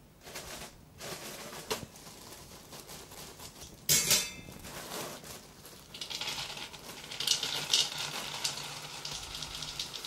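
Dry dog biscuits poured from a plastic bag into a bowl, rattling and clattering steadily from about six seconds in. A brief loud burst of noise comes about four seconds in.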